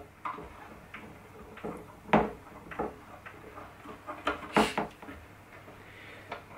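Irregular small clicks and taps as the tuning machine on a classical guitar's slotted headstock is turned by hand to wind on a new nylon string, with fingers handling the string and peg; the sharpest clicks come about two seconds in and again near the end.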